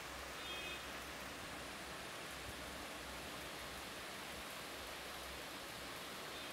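Steady, faint hiss of background noise with no speech or other event: the recording's own noise floor.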